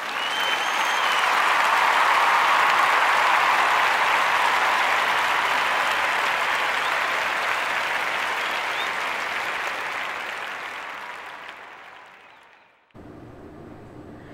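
Crowd applause with a brief whistle about a second in. It swells over the first two seconds and fades away near the end.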